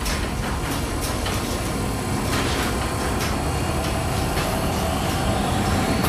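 A train rolling in: a steady rumble and clatter with irregular clicks, and a faint steady squeal from about halfway through.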